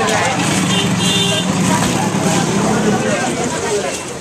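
Busy street hubbub: crowd voices over a steady motor-vehicle hum, with a short double horn beep about a second in.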